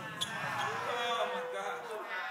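Faint background music: a soft held chord of steady tones, one note swelling in about a third of the way through and fading near the end. A small click just after the start.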